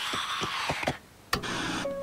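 Cartoon sound effects from the episode's soundtrack: a rushing swish for about a second, a brief cut-out, then a sharp click and hiss as a TV switches on, with a steady tone starting near the end.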